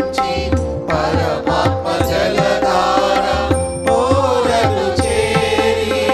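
Church choir singing a hymn with tabla and electronic keyboard accompaniment: regular tabla strokes under the voices, with a steady held note running beneath.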